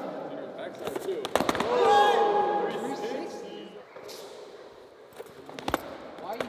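A few sharp knocks of a board hitting the concrete floor about a second and a half in, followed by a loud drawn-out shout that falls in pitch; another single knock comes near the end.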